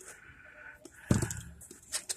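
Utility knife slitting the packing tape on a small cardboard box, with a sharp scrape about a second in followed by cardboard rustling and handling.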